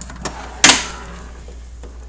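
Drawer of a Craftsman steel tool chest being moved, with one sharp metal clack a little over half a second in.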